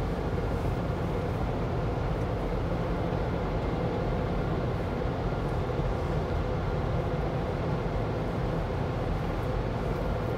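Automatic tunnel car wash heard from inside the car's cabin: a steady low rumble of water spray and wash machinery on the car body, with a lighter hiss above it.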